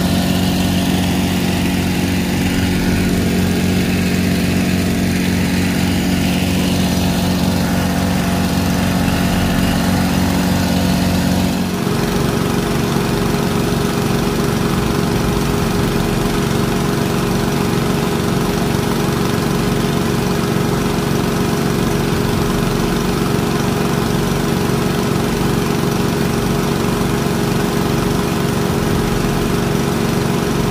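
Small gasoline engine of a gold suction dredge running steadily at constant speed and driving its water pump, with water rushing through the sluice. About twelve seconds in the engine note changes abruptly.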